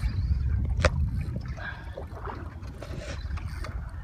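Low steady rumble of a boat on open water, with wind on the microphone, and a single sharp click about a second in.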